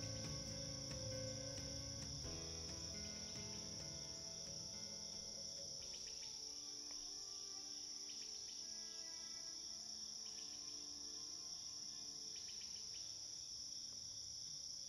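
Crickets chirping in a steady, continuous high trill, faint, with the last notes of soft music fading out over the first few seconds.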